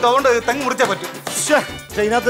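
A voice talking over background music, with a quick run of sharp knocks in the middle.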